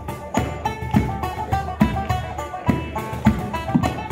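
Banjo picking a fast Irish reel melody over steady cajon and bodhran beats, played live by a folk trio.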